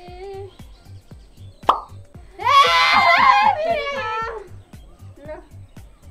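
Background music with a steady low beat. About a second and a half in there is a sudden pop, then a loud, high-pitched vocal sound lasting about two seconds.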